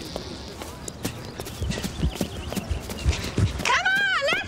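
Running footsteps on a paved path: irregular thudding strides that grow louder after about a second as runners come close. Near the end a woman's voice starts calling out.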